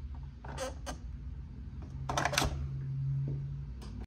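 An electric cupping massager being handled and pressed into the moulded plastic tray of its box, giving a few short plastic scrapes and clicks, with a cluster of them around two seconds in, over a steady low hum.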